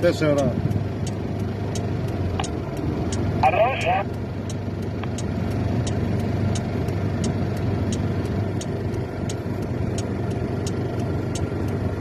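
Steady low engine and road noise of a car creeping along at low speed, heard from inside the cabin, with a regular light ticking several times a second. A brief voice cuts in about three and a half seconds in.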